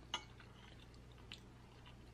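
Very faint room tone with two soft clicks of a metal fork against the plate as it cuts into a crab-stuffed salmon fillet, one just after the start and one a little past halfway.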